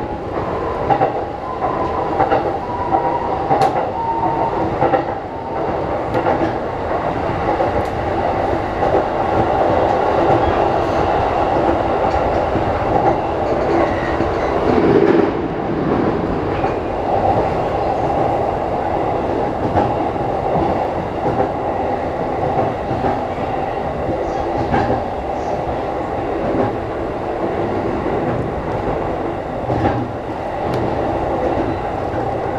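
Saikyō Line electric commuter train running, heard from inside the train: a steady rumble of wheels on rail with scattered clicks over rail joints and points. There is a faint falling whine a few seconds in, and a brief louder surge about halfway through.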